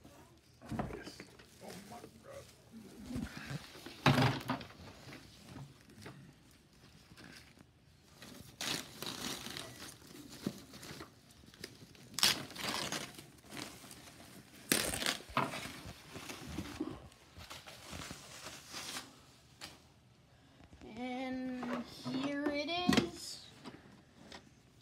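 Clear plastic packaging bag crinkling and rustling in irregular bursts as a new coffee maker is unwrapped, with the loudest rustles about four, twelve and fifteen seconds in. Near the end a child's voice is heard briefly, without clear words.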